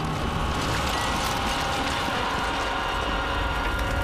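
Battle-scene sound effects: a dense, steady clatter and crackle over a low rumble, as of fighting among fires.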